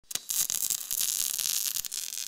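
Electric crackling sound effect: a couple of sharp snaps, then a steady high hiss of sparks crackling with many small snaps.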